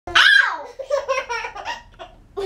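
Baby laughing: a loud high-pitched squeal that falls away, then a quick run of short laughs that fade out.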